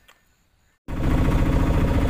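Auto-rickshaw engine running steadily, heard from the driver's seat in the cab. It cuts in abruptly about a second in, after near silence.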